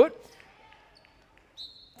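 Faint basketball game sound in a gym: a few light bounces of the ball on the hardwood court, then a short high sneaker squeak near the end.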